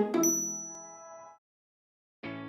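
Final chord of a short advertising jingle with a high ding on top, ringing out and fading away over about a second and a half.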